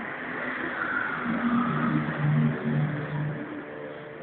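Small 48cc two-stroke engine of an ASKATV 50 buggy running, louder and revved for about two seconds midway, then easing back.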